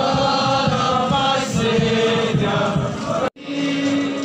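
A marching brass band playing a slow hymn in held, multi-part chords. The sound cuts off abruptly a little over three seconds in and comes back on a different held note.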